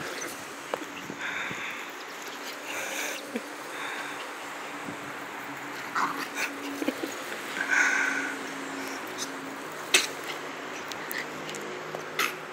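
Yorkshire terriers playing and running on grass, with a few short dog sounds scattered through. There is a single sharp click about ten seconds in.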